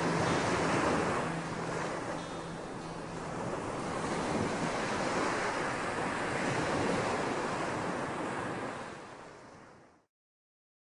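Wind blowing over the camera microphone, a rushing noise that rises and falls and fades out near the end.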